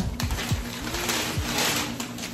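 Tissue paper rustling in a few short bursts as it is pulled away from a bag, over quiet background music.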